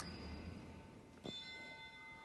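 Faint bell-like chime struck twice, about a second and a quarter apart, each strike leaving several steady high tones ringing on.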